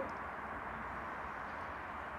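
Steady, even background hiss (room tone) with no distinct events.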